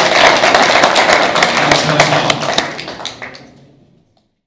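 Audience and panel applauding: many hands clapping, with some voices underneath. The clapping fades away over the last second.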